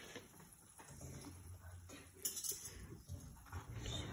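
Faint scraping and swishing of a silicone spatula stirring simmering butter and milk in a metal skillet, with a couple of brief louder scrapes past the middle.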